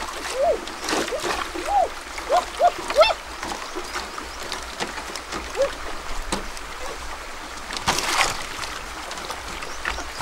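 Water splashing and sloshing around a bamboo raft in a shallow stream, with a quick string of short rising-and-falling chirp-like sounds in the first three seconds and a stronger splash about eight seconds in.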